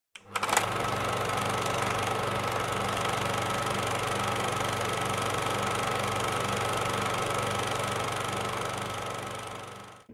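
A small machine running steadily, a mechanical whir over a low hum, starting with a click about half a second in and fading out near the end.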